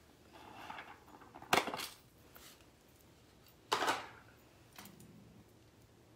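A few light metallic clicks and clinks as a small metal washer blank is handled and set on a steel bench block: a soft rustle first, then a quick double click about a second and a half in and a sharper click near four seconds.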